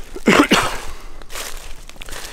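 Footsteps crunching through dry leaf litter, with a short throaty vocal sound from the walker about a third of a second in.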